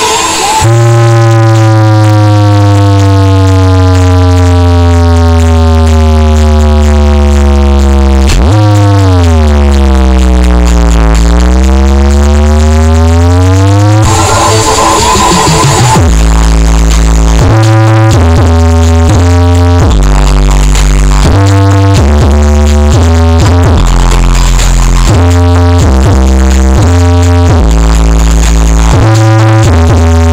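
Electronic dance music played very loud through a 20-subwoofer outdoor sound system during a sound check. A long falling synth sweep runs over deep bass, then a sweep that dips and rises again, and from about halfway a choppy bass line moves in short steps.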